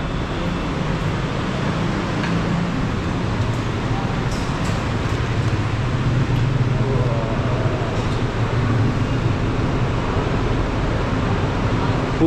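Busy train station concourse ambience: a steady low hum and rumble of noise with faint background voices.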